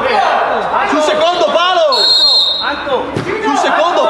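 Several players shouting to each other in an indoor sports hall, with a referee's whistle blown once for under a second about two seconds in, and a ball thud about three seconds in.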